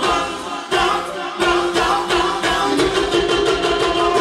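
Live band music with a man singing into a microphone over a steady beat.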